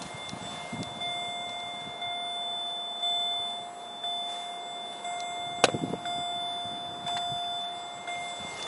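Vauxhall Corsa's dashboard warning chime, a steady tone repeating about once a second. One sharp click sounds about halfway through.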